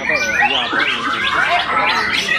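Several white-rumped shamas (murai batu) singing at once: a continuous dense tangle of overlapping whistled and warbled phrases.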